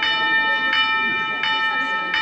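A clock chiming the hour, a bell-like tone struck three times at an even pace about 0.7 s apart, each stroke ringing on until the next; it strikes three o'clock in the morning.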